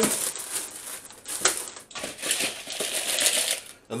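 Sweetcorn kernels poured from a plastic bag into a plastic bowl of vegetables: an irregular rattle of many small hard pieces landing, with scattered sharper clicks.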